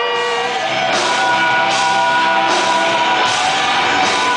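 Live rock band playing at full volume: sustained pitched notes over drums, with a cymbal wash about every 0.8 s.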